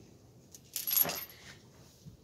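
A brief scratchy clatter about a second in as a hand grabs the recording device, rubbing and knocking right at the microphone.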